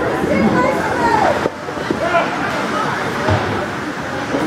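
Overlapping chatter of spectators in an ice rink's stands, several voices talking at once.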